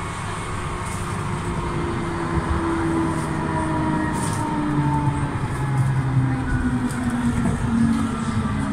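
Electric tram heard from inside the passenger cabin while running, a steady rumble of wheels and motor under faint whining tones that sink slowly in pitch.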